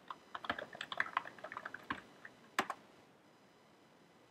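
Typing on a computer keyboard: a quick run of keystrokes for about two seconds, then one louder key press, after which the typing stops.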